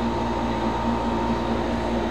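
Steady mechanical hum with a few faint low droning tones: background machine noise, even and unchanging.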